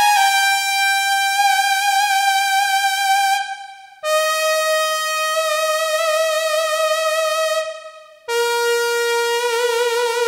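Lead voice of an IK Multimedia UNO Synth Pro Desktop played from a Computone Lyricon Driver wind controller: three detuned sawtooth oscillators with the synth's own drive, chorus, delay and reverb, breath opening the filter and volume. It holds three long notes, each a step lower than the last, with vibrato and short breaks about four and eight seconds in.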